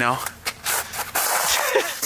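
A man laughing breathily, a short questioning "No?" and then about a second of airy, huffing laughter.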